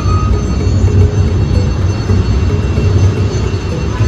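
Loud, steady low rumble of city traffic.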